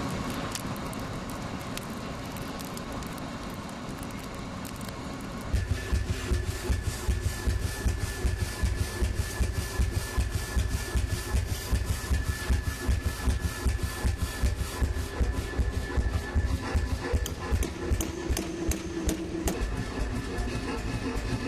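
Blacksmith's power hammer: a steady machine drone, then about five and a half seconds in a fast, regular pounding starts and keeps going.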